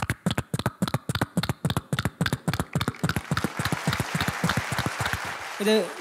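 Vocal mimicry into a handheld microphone: a rapid, even run of mouth clicks, about eight a second, with a rushing hiss building under them in the later seconds. It breaks off near the end, when a spoken word begins.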